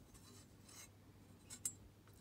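Very faint handling of a steel feeler gauge in a two-stroke outboard's cylinder bore, with two small metal clicks near the end, as the blade is tried in the piston ring's end gap.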